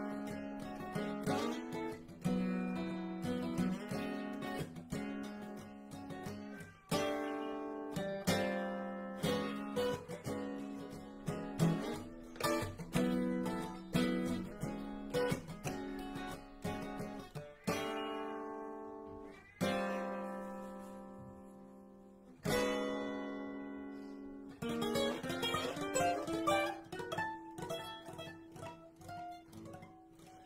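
Solo acoustic guitar playing the instrumental close of a song: chords struck one after another and left to ring out. In the last few seconds a final chord is held and fades.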